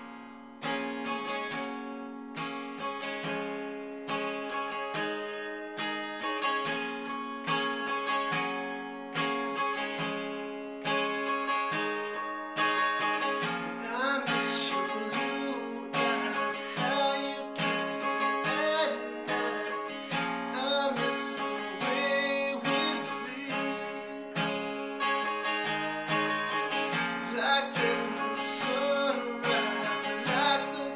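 Acoustic guitar playing chords in a steady rhythm, picked and strummed.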